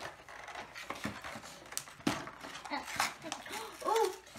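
A cardboard Kinder egg box and its foil wrapper being handled and pulled open, making scattered crackles and clicks; the sharpest come about two and three seconds in.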